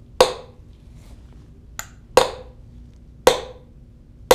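Small hammer striking a steel probe pin set into a timber piling: three sharp strikes, each with a short metallic ring. Each strike sends a stress wave across the piling to start a Fakopp microsecond stress wave timer; the wave stops the clock at the probe on the far side.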